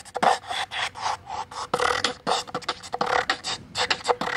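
Beatboxing through a handheld megaphone: quick percussive mouth sounds, several a second, without words.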